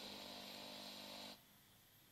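Near silence: faint room tone that cuts off abruptly to dead silence partway through.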